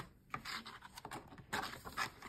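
A paper picture-book page being handled and turned by hand: faint paper rustling and soft scratchy taps, with a louder rustle near the end as the page swings over.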